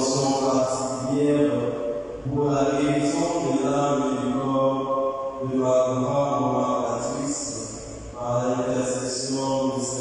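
Liturgical chant sung in long held phrases, each about two to three seconds, with short breaks between them.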